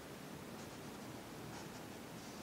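Faint scratching of a drawing tool's tip on paper in a few short strokes, about half a second in and again near the end, over low room noise.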